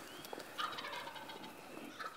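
Wild turkey gobbling, faint.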